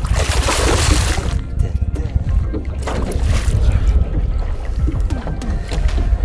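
A hooked pike splashing at the surface beside a boat, a loud splash in the first second and a half and a smaller one about three seconds in, over heavy wind rumble on the microphone and waves against the hull. Music plays underneath.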